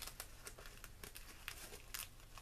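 Faint, irregular rustling and crinkling of a fabric ribbon and the fabric-covered hat crown as hands wrap the ribbon around it, with small scattered ticks.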